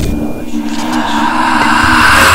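Edited transition sound effect: a hiss-like whoosh swelling steadily louder over a low steady drone.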